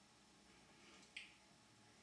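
Near silence: quiet room tone, broken by a single short, sharp click a little over a second in.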